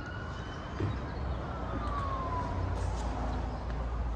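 A siren wailing: one slow rise in pitch, then a slow fall, over a low steady hum.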